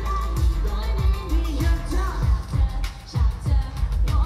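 Asian pop song with a singer's voice over a heavy, regular bass drum beat, played loud through a concert sound system.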